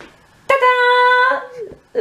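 A woman's voice sings a fanfare-style 'ta-da': one held, level, high 'taaa' of about a second, then a short 'da!' near the end.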